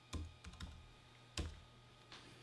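Faint computer keyboard keystrokes: a few separate, irregularly spaced key clicks as a short word is typed.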